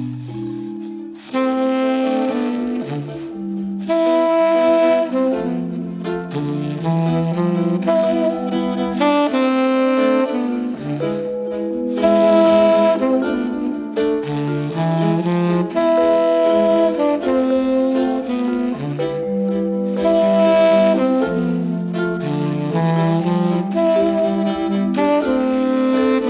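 Instrumental jazz: a tenor saxophone plays phrases of held and moving notes over other pitched instruments, with violin and vibraphone in the trio's lineup.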